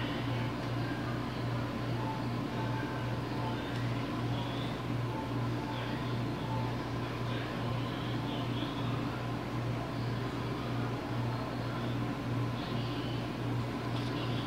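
Steady low mechanical hum with a slight regular waver, over a faint room noise.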